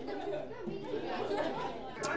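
A classroom of students chattering together in a low murmur of many overlapping voices, with no single voice standing out.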